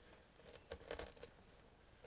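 Faint crackling and rustling of artificial flower stems and plastic foliage being pushed into an arrangement by hand, a brief cluster of soft clicks about half a second to a second in.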